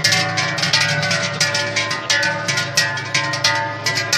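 Large brass cowbells worn by Silvesterchläuse, shaken so they clang over and over, their strikes overlapping and leaving a wash of sustained ringing tones.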